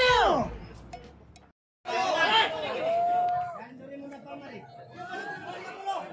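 A man's drawn-out yell ending on a falling pitch, cut off after about half a second. After a moment of silence, a group of people chattering and calling out to each other.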